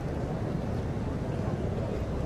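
Steady murmur of a large outdoor crowd of spectators over a constant low rumble, with no single distinct event.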